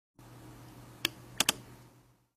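Three sharp clicks of a computer mouse, a single one about halfway through and a quick pair just after it, over a low steady hum.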